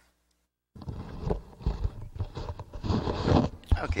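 Loud, irregular rustling and knocking handling noise close to the microphone. It starts abruptly about a second in, and a man's voice begins near the end.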